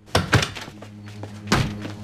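Heavy thumps of a door being burst open: two hard knocks close together at the start and another about a second and a half in. A low, held music note sounds under them.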